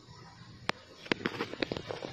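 Stiff lid of a small clear plastic container being pried open: one sharp click, then a run of quick plastic clicks and crackles.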